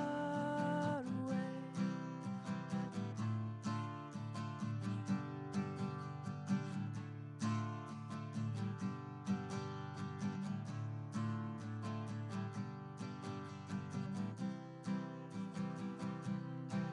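Acoustic guitar strummed alone as an instrumental break in a song, after a held sung note ends about a second in.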